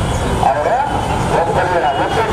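A man's voice speaking over a microphone in a spoken address, with a steady low rumble underneath.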